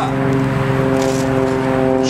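A steady mechanical drone holding one even pitch, like an engine running at constant speed.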